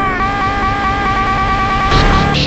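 A cartoon pony's shouted voice, slowed right down and drawn out into a sustained, buzzy pitched tone, chopped into a rapid stutter as a remix vocal effect.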